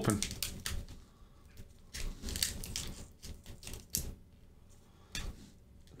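Foil Pokémon booster pack wrapper crinkling and crackling in irregular clusters of small clicks as fingers pick at its sealed top edge: the pack is resisting being torn open.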